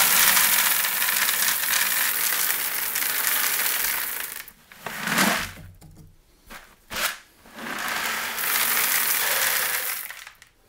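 Small gravel poured from one plastic five-gallon bucket into another, a steady rattling rush for about four seconds. Then a pause with a couple of short knocks, and a second, shorter pour near the end.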